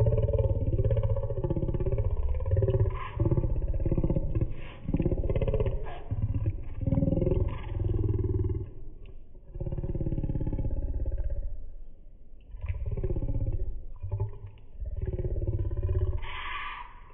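A man's voice talking in phrases with short pauses, sounding rough and muffled, too garbled for the words to be made out.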